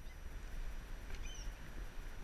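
Low rumble of wind and handling on a hand-held action camera's microphone, with one short high chirp a little past halfway.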